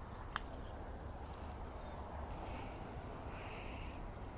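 Steady high-pitched insect chorus, with a single light click about a third of a second in as a golf club strikes the ball on a short chip.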